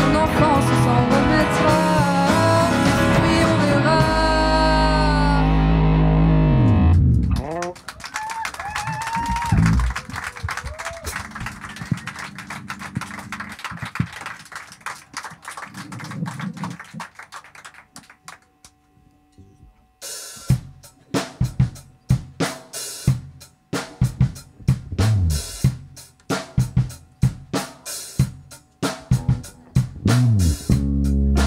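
Live pop-rock band playing on stage: electric guitars, bass and drums play loudly, then drop away about seven seconds in to a quieter, sparser passage. Near the last third the drums come back in with sharp, uneven hits over bass notes.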